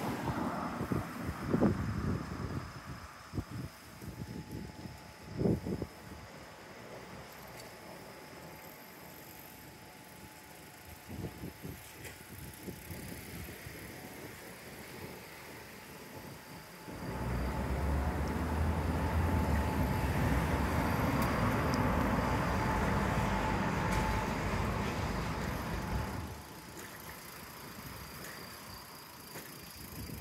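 Roadside street ambience with passing traffic. About halfway through, a much louder, steady rushing noise starts abruptly and stops suddenly about nine seconds later.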